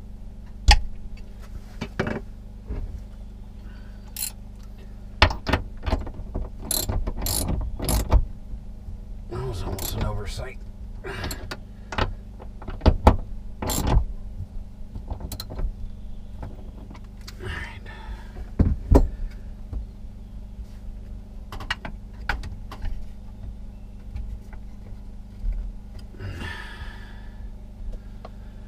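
Irregular clicks, knocks and clatter of covers being fitted onto battery busbars and fastened with a hand tool, over a steady low hum.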